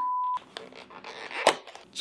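A steady electronic censor bleep over a swear word, cutting off within the first half second. Then a cardboard box rustling and scraping as a tightly packed jar is pulled out of it, with a sharp snap about a second and a half in.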